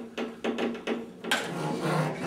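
A string instrument played percussively, likely with a bow held in a fist grip: about six short, sharp wooden knocks at an uneven pace in the first second and a half, each leaving a faint pitched ring.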